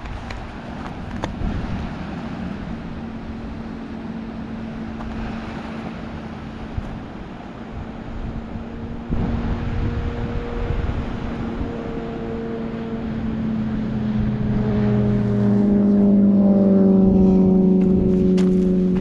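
A car approaching on the road, its engine and tyre hum growing steadily louder toward the end and dropping slightly in pitch as it nears, over a steady background rush.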